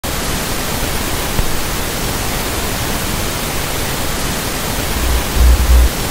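Television/VHS static hiss: loud, even noise with no tone in it, as from a set with no signal. Heavy low thumps come in during the last second.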